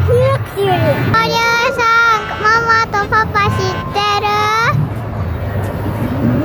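A child singing a short tune in held, sliding notes, starting about a second in and stopping a little before the end, over a low steady hum.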